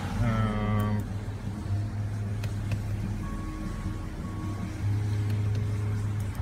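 2016 Mazda 3's four-cylinder engine idling, a steady low hum heard inside the cabin. A few brief faint tones sound about halfway through.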